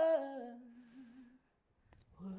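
Unaccompanied woman's singing voice: a sung note slides down and settles into a low held hum that fades out about a second and a half in, followed by a short silence.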